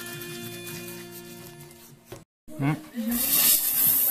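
Background music with long held notes, cut off about two seconds in; after a brief break, a short voice and then a loud hiss of an aerosol can of door-frame foam sealant spraying near the end.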